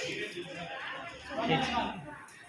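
Indistinct chatter of several people talking quietly, a little louder near the end.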